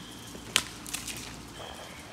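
Quiet outdoor background with one sharp click about half a second in and a few fainter ticks after it.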